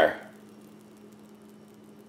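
The end of a spoken word, then quiet room tone with a faint steady hum.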